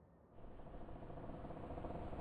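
Almost silent at first, then a faint steady background hum sets in about a third of a second in.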